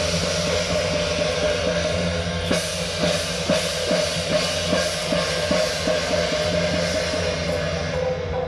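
Temple procession percussion: large hand cymbals clashing over a drum, beating a steady rhythm of about two to three strokes a second.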